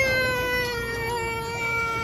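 A young child's long, drawn-out whine on one held high note, sinking slightly in pitch.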